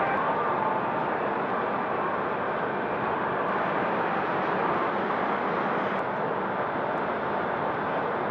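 Steady, even rushing noise of outdoor harbour ambience, without any distinct events.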